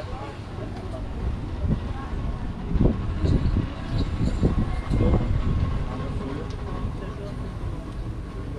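Wind buffeting an action-camera microphone in uneven low gusts, loudest about three and five seconds in.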